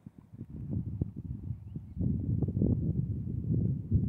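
Wind buffeting the microphone: an irregular low rumble that gets louder about halfway through.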